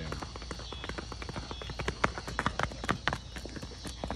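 A Paso Fino gelding's hooves striking asphalt in a rapid, even patter of footfalls as it moves in its four-beat gait, growing louder past the middle as the horse comes close.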